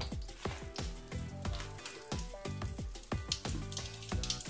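Mr. Bubble Magic Bath Crackles popping and fizzing in water: a fast, irregular scatter of small pops and snaps, with background music playing.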